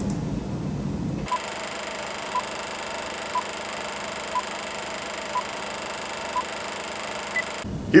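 Film countdown leader sound effect: a short beep about once a second over steady hiss, six in all, then one higher-pitched beep just before it cuts off.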